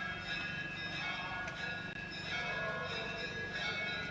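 Bells ringing continuously, several ringing tones overlapping and swelling at intervals, over a steady low hum.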